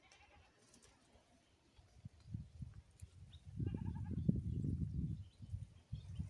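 A goat bleating once, about halfway through. Under it are loud low rumbling bumps and rustling that soon die away.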